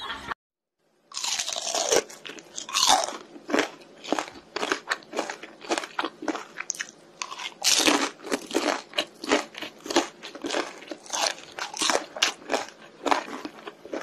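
Crunchy biting and chewing: a rapid, irregular series of crisp crunches, a few each second, starting about a second in after a brief silence.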